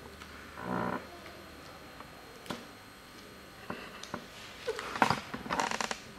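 Small plastic clicks and taps as a disposable needle tip cartridge is handled and fitted onto a microneedle RF handpiece, with a quick run of clicks near the end as it goes on. A short murmur of a voice comes about a second in.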